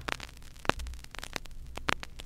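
Vinyl LP surface noise in the blank groove between two tracks: scattered clicks and pops, the strongest about two-thirds of a second and just under two seconds in, over a steady low hum.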